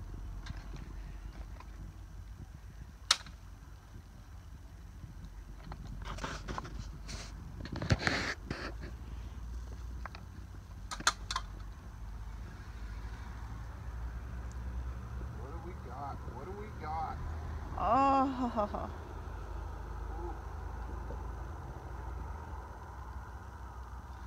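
Steady low outdoor rumble with a few sharp clicks scattered through it: one about three seconds in, a cluster around six to eight seconds, and two close together near eleven seconds. A short laugh comes near the end.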